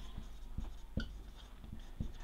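Marker pen writing on a whiteboard: faint strokes, with a few light taps as letters are formed.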